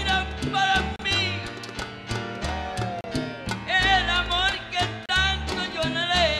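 Live salsa band playing: steady percussion and bass under wavering horn or vocal lines, with a male singer's voice over the band.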